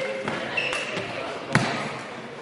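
Badminton rackets striking a shuttlecock in a reverberant sports hall: a few sharp hits that echo, the loudest about one and a half seconds in.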